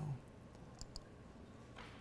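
Two quick, faint clicks a little under a second in, from the laptop's pointer button as a drop-down menu is opened on the web page, against quiet room tone.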